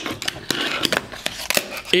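Fingerboard clacking on a hard desktop: a handful of sharp clicks as the small deck and its wheels strike and roll on the desk surface during a trick attempt.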